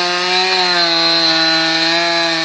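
Chainsaw running at high revs while cutting into a standing tree trunk. The engine note holds steady, with a slight dip about half a second in.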